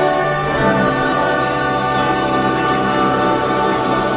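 Live opera ensemble: several voices singing together with instruments, settling into long held notes about a second in.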